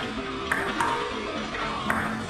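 Table tennis ball clicking sharply off paddles and the table during a fast rally, a couple of crisp hits over music playing steadily.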